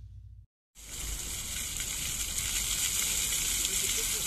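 Water jets of a new fountain spraying and splashing on its trial run: a steady hiss that starts about a second in, after a short musical sting fades out.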